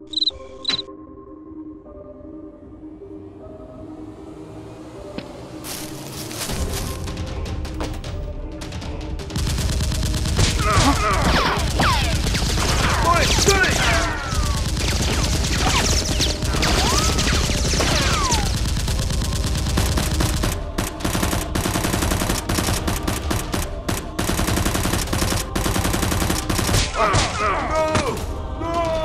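Background music, then from about six seconds in a long stretch of rapid automatic gunfire sound effects, dense runs of shots with a few short breaks, over the music.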